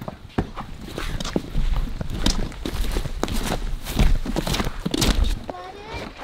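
Footsteps of people in rubber boots walking, a string of uneven knocks and scuffs, with a low rumble through the middle stretch.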